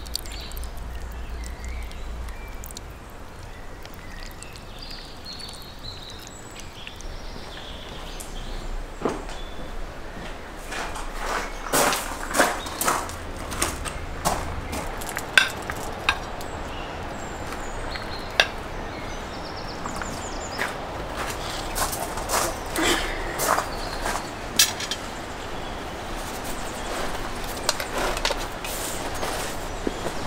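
A ladle scraping and dishing stew out of a cauldron onto a plate, then plates and dishes set down on a wooden table, with scattered sharp clinks and knocks over steady outdoor background noise.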